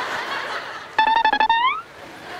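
A comic sound effect dubbed in by the editors. About a second in comes a quick run of repeated notes on one pitch, ending in a short rising slide.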